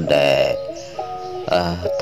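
A man's voice preaching a Buddhist sermon in Khmer, drawn out with long held tones, over steady background music that carries through a short break in the words about halfway in.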